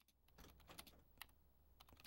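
Faint computer keyboard typing: a few irregular key clicks over a low, steady room hum.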